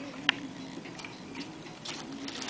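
Handling of a plastic-wrapped satellite speaker lifted out of its cardboard box: one sharp click about a third of a second in, then a few faint ticks.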